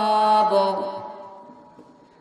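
A man's voice chanting Quranic verses in a melodic recitation. A long held note ends about half a second in, and the voice trails off into quiet by the end.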